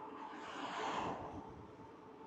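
A car passing in the other direction: a soft rush that swells about a second in and then fades, over wind on the microphone.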